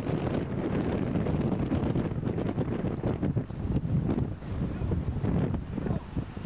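Wind buffeting the camera microphone: a loud, low, gusting rumble that cuts in suddenly.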